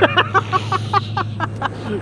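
A man laughing in a quick run of short bursts over the steady idle of a four-wheel-drive's engine.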